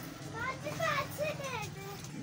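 Children's voices in the background: a few high-pitched calls rising and falling in pitch, over a low steady hum.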